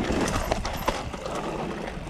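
Mountain bike riding fast down a stony, gravelly forest trail: tyres rumbling over the surface with irregular knocks and clatter as the wheels hit stones and the bike rattles.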